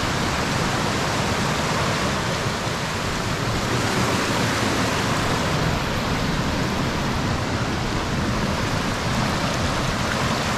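Mountain creek rushing fast over bedrock slabs in a small cascade: a loud, steady rush of water.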